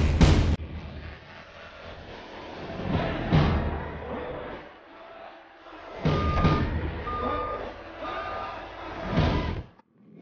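A car-transporter truck's warning beeper gives three short, even beeps about a second apart, among several loud swelling rushes of noise. A loud hit opens the stretch.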